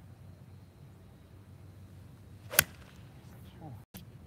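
A golf iron strikes a ball on a full swing: a single sharp crack about two and a half seconds in.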